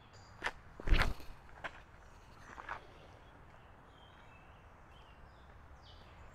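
Footsteps of a disc golfer's run-up and throw on a dirt tee pad, picked up close by a clip-on mic. There are a few steps, the loudest a heavy thud about a second in, and a last scuff near three seconds, after which only faint outdoor quiet remains.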